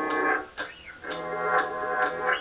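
Hip-hop/rock song recording with guitar, dull-sounding with its highs cut off, dipping briefly in level about half a second in.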